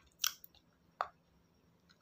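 Close-miked bites into a hard white block: two crisp crunches about three quarters of a second apart, the first the louder.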